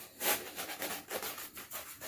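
Scratchy rubbing and rustling as hands work inside a sneaker's collar, pulling out the packing paper stuffed in it, in a run of short irregular strokes.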